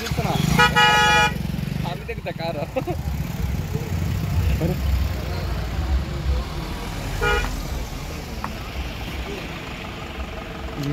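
A vehicle horn blares for just under a second near the start, then gives one short toot about seven seconds in. Underneath is the low, steady rumble of car engines as vehicles roll past slowly in a line.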